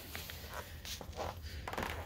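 Quiet background with a few faint, soft taps and shuffles of feet on a concrete floor.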